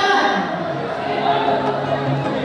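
Several voices singing together in long held notes, over the babble of a crowd in a large hall.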